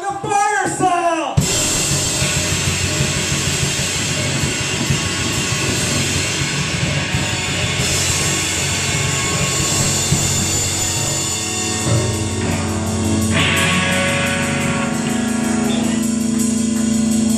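Live rock band: the singer's last line ends about a second in, then a loud, sustained wall of distorted electric guitars and drums. A steady held note comes in near the end.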